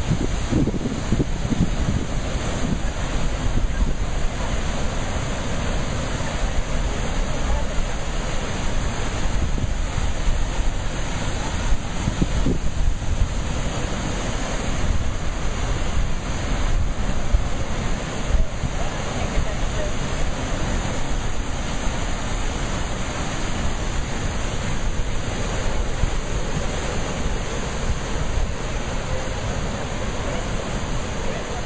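Heavy ocean surf churning and breaking against a rocky shore, a steady rushing wash of water with wind buffeting the microphone.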